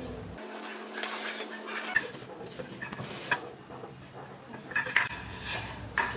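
Wooden table legs knocking against one another as they are handled: a few sharp clacks spaced a second or so apart, with rustling between.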